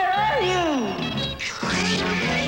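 Cartoon soundtrack music with a sliding cry that falls in pitch over the first second, then a break about one and a half seconds in and new music.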